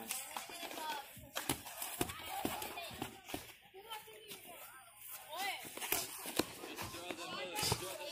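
Boxing gloves thudding in sparring: a scattering of short, sharp impacts, irregularly spaced, with voices talking in the background.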